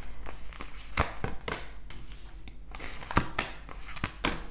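Tarot cards being handled and dealt onto a table: papery rustling and light taps and slaps as cards are laid down, the sharpest about a second in and again just after three seconds.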